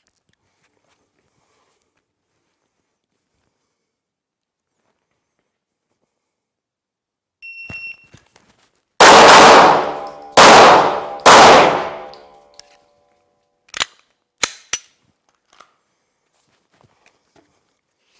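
A rapid string of loud pistol shots in three quick groups, each ringing on in the indoor range, preceded by a short high beep. A few sharp metallic clicks follow.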